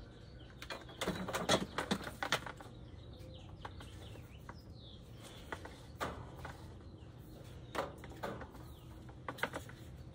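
Clicks and knocks of a circular saw being handled and adjusted with its motor off: a quick cluster of knocks in the first couple of seconds, then scattered single clicks.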